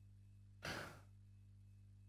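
One short breath drawn by a man during a pause in his speech, lasting about half a second and coming a little after the start, over a faint steady low hum; otherwise near silence.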